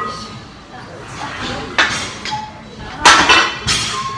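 Metal clinks of steel weight plates on a plate-loaded leg press machine, a few sharp strikes with short ringing, mixed with loud, breathy gasping from the exhausted lifter near the end.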